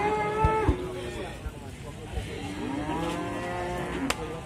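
Cattle mooing twice. The first moo is already under way and stops less than a second in; the second starts about two and a half seconds in, rises in pitch and then holds for over a second.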